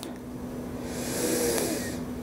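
A person's deep breath, heard as a breathy hiss that starts about a second in and lasts about a second.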